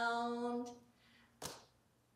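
A woman singing unaccompanied holds the last note of a children's song, on the word "round", and it fades out within the first second. A brief, quieter sharp noise follows about a second and a half in.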